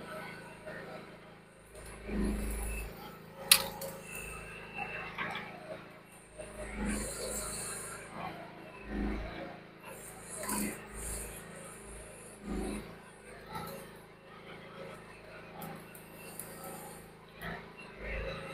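Groundhog ZH14G mini excavator running steadily while its arm and tracks work, the sound swelling every second or two. A single sharp crack or clank about three and a half seconds in is the loudest sound.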